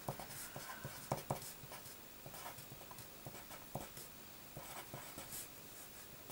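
Pen writing on paper: a string of short, faint scratching strokes with small ticks.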